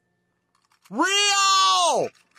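A man's high-pitched falsetto cry, one long drawn-out "weee" lasting about a second, starting about a second in, gliding up at the start and dropping away at the end.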